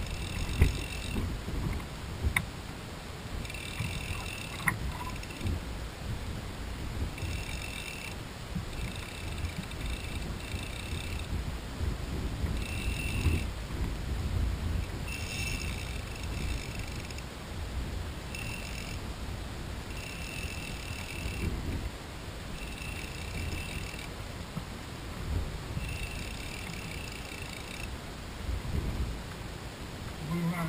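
Fly reel's click drag buzzing in about ten short bursts as line runs through it while a hooked fish is fought on a fly rod, over a steady low rumble of wind on the microphone.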